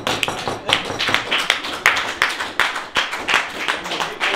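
A small group of people clapping their hands, a brisk, uneven round of applause.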